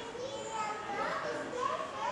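Children's voices chattering and calling out over one another, indistinct crowd talk with no clear words.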